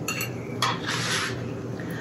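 A fork clinking and scraping against a metal pan while cutting through a crêpe. A longer scrape begins about half a second in.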